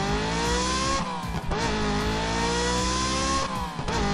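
Race-car engine sound effect revving up, its pitch climbing, dropping back about a second in as at a gear change, climbing again, and falling away near the end.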